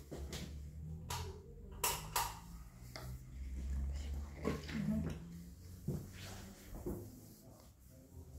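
A few short, scattered clicks and rustles of something being handled, over a low rumble.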